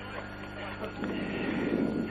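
Faint background voices over a steady low hum, growing a little louder about halfway through.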